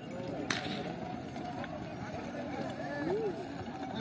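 Distant shouting and calling of men driving a yoked pair of bulls hauling a load across a dirt arena. There is a single sharp crack about half a second in.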